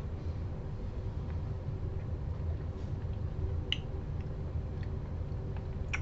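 Quiet room with a steady low hum and a few faint, scattered clicks of mouths and spoons as hot sauce is tasted off spoons; the clearest click comes a little past the middle.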